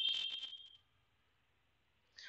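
A short, high, buzzy electronic beep that starts suddenly and fades away within about a second.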